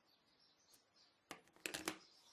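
Smartphones being handled and set down on a wooden tabletop in a quiet room: a single light knock a little over a second in, then a quick run of small knocks and clicks near the end.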